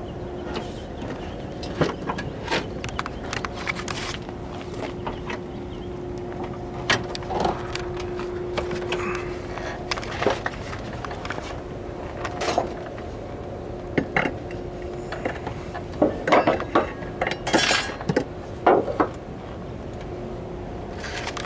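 Scattered clicks, knocks and clinks of handling, busiest over the last four seconds, over a steady low hum.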